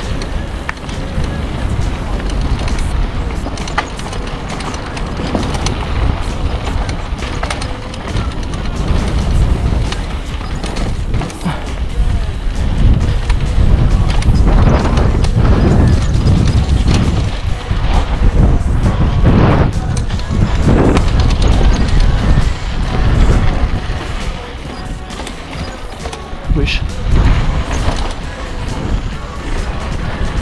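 Mountain bike descending a rocky dirt trail: tyres rolling over dirt and stones and the bike rattling and knocking over rocks, under a steady rumble of wind on the camera's microphone. It grows louder through the middle stretch and eases off again near the end.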